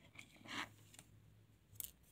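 Faint handling noise: a few light clicks and a brief scrape, with a sharper click near the end.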